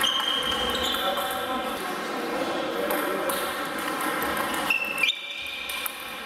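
Table tennis rally: the ball clicks sharply off bats and table, and shoes give high squeaks on the wooden floor, over a murmur of voices echoing in a large hall.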